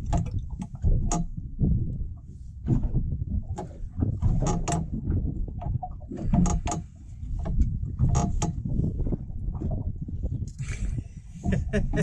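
Knocking and rumbling on a small fishing boat drifting with its outboard not running: an uneven low rumble with scattered sharp knocks and clicks of gear and hull.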